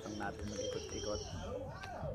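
Background music playing over the shop's sound system, loud in the room, with a singing voice in it.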